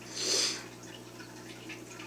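A short breath-like hiss about half a second in, then the faint steady low hum and quiet water trickle of a running home aquarium.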